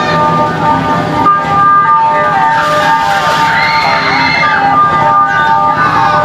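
Live rock band playing through a PA: sustained electric guitar and keyboard chords ringing, with gliding, bending notes sliding up and down about halfway through.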